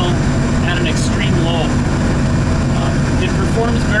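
ARGO Sasquatch XTX's engine idling steadily, heard from inside its closed cab as a constant low drone.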